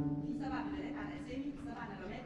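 A low plucked note on a concert pedal harp, ringing on and fading away over about a second and a half.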